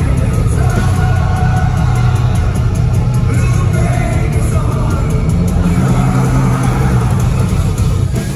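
Live rock band playing loud through a PA, with a male singer's voice over guitar, dominated by a heavy booming low end.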